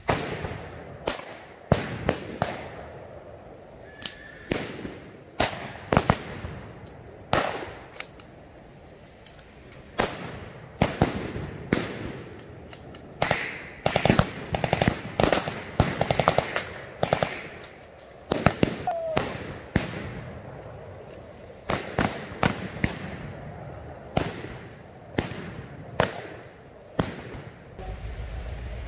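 Blank gunfire: irregular single rifle shots and short rapid machine-gun bursts, the shots coming thickest in quick runs through the middle.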